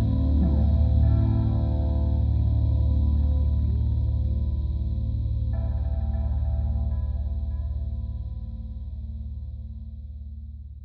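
Distorted electric guitar with effects holding a sustained chord and ringing out, slowly fading away over the last few seconds.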